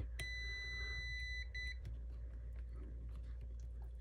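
Digital multimeter continuity tester beeping as its test probes touch the model locomotive's pickup contacts: one steady high beep of about a second, then a brief second beep. The beep signals an electrical connection between the probe tips.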